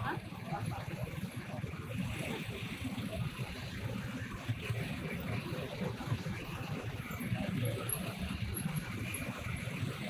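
A column of police motorcycles riding slowly past, their engines a low steady rumble, with faint voices from the onlookers.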